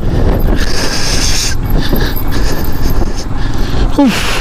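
Motorcycle riding over a rough, rocky gravel track: engine running under a steady, loud rumble of wind buffeting the microphone and tyres over stones.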